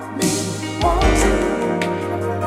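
Music: a song with held chords over a steady low bass note.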